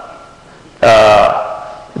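A man's drawn-out hesitation sound, "uh", starting about a second in after a short pause and fading away; speech only.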